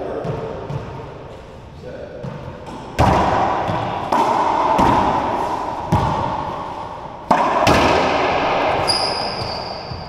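Racquetball rally in an enclosed court: a series of sharp racquet-and-ball hits about a second apart, each ringing with a long echo off the walls. A short high squeak sounds near the end.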